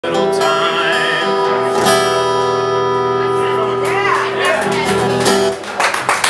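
A man singing over a strummed acoustic guitar, with a long held chord and a sung note that ring out, then stop about five and a half seconds in, as the song ends.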